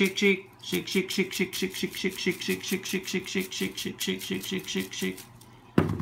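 A man's voice chanting the word "shake" over and over, fast and rhythmic at about five times a second, with a brief pause under a second in. The chanting stops a second before the end and is followed by a single sharp knock.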